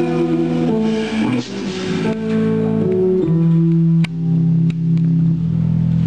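A live rock band playing, led by electric guitar over bass, keyboard and drums. Long held notes step from pitch to pitch, with two sharp hits near the end.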